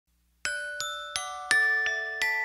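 Instrumental opening of a children's song: a glockenspiel-like bell tone plays a slow melody of single struck notes, about three a second, each ringing on, beginning about half a second in.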